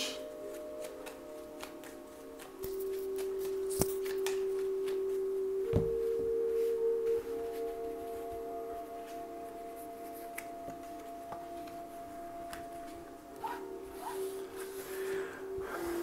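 Soft background music of long held tones, like a singing bowl, over the light rustle and clicks of a deck of oracle cards being shuffled, fanned out on a cloth and drawn, with a couple of sharper card snaps about four and six seconds in.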